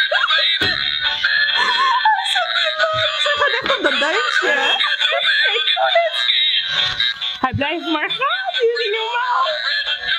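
Two battery-powered dancing Santa hats playing their music at the same time, with laughter and shrieks over it.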